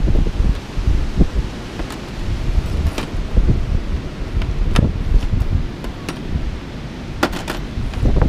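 Strong wind buffeting the microphone, a loud low rumble throughout. A few sharp clicks of metal jewelry being picked up and set down on a car hood, the last ones close together near the end.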